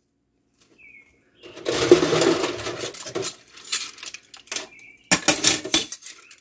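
Dishes and silverware clinking and clattering as they are washed by hand. A dense run of knocks and clinks starts about a second and a half in, scattered clicks follow, and a second loud burst of clatter comes near the end.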